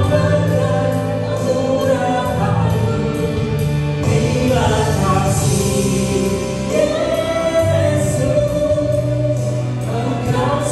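A man and a woman singing an Indonesian worship song together as a duet into handheld microphones.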